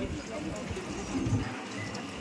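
Indistinct voices of several people talking in the background, with a few irregular knocks or taps.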